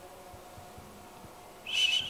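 A pause in a talk: a faint steady room hum, then near the end a brief high whistle as the elderly speaker draws breath before going on.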